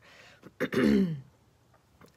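A woman clears her throat once, about half a second in, in a short voiced rasp that falls in pitch.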